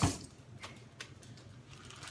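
Running tap water cuts off at the very start, leaving a quiet room with a few faint, light clicks.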